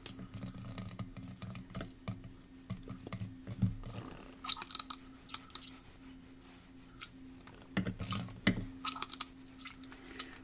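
Plastic wash bottle squirting water to rinse solid sodium hydroxide out of a glass beaker into a plastic bottle: soft trickling with scattered light clinks of the glass, over a steady low hum.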